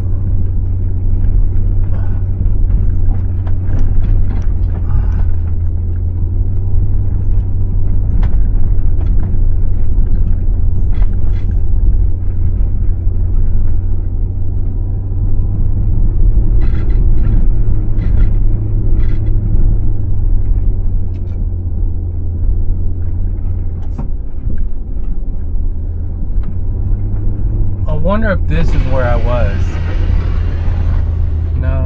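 2004 Range Rover HSE's V8 and running gear rumbling low and steady as it crawls over a bumpy, rocky dirt trail, heard from inside the cabin, with scattered short knocks and rattles from the rough ground.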